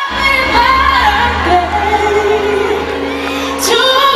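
A woman singing a pop song with band accompaniment, from a concert recording, in long held notes that slide between pitches.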